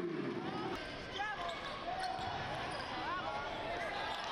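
Basketball game sounds in a gym: sneakers squeaking on the hardwood court again and again, with a ball bouncing, over steady crowd chatter.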